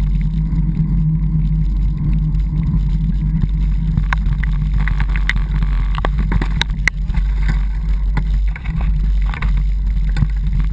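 A vehicle engine running steadily at a constant low hum while moving along a dirt trail. From about four seconds in there are scattered knocks and rattles as the vehicle jolts over the rough ground.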